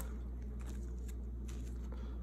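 Faint soft rustling and slides of a trading card being worked into a thin plastic penny sleeve, over a steady low electrical hum.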